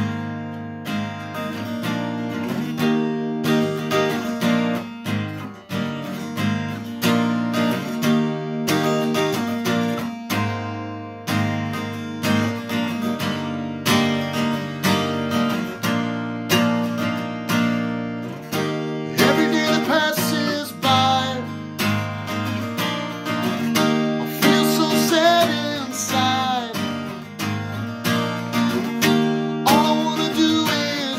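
Steel-string acoustic guitar playing a song's opening, chords picked and strummed in a steady pattern. In the second half a voice sings along over it in two short phrases.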